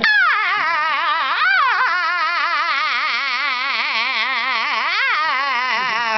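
A young man's voice holding one long sung note with a wide, fast vibrato. The note slides down at the start, swoops up about a second and a half in, and falls away at the end.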